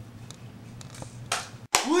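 Quiet room hum, broken about a second and a half in by one short, sharp burst of noise. A man's voice starts just before the end.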